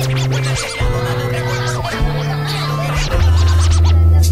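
Hip-hop beat instrumental: a bass line stepping between held notes about once a second, with turntable scratching over it.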